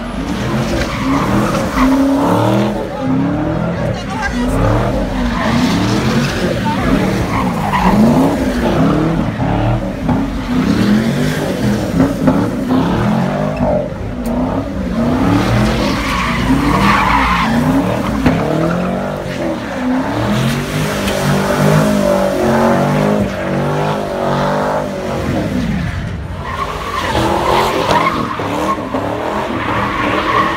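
A car doing burnouts and donuts: its engine revs up and down over and over while the tires squeal on the pavement. Spectators' voices and laughter mix in.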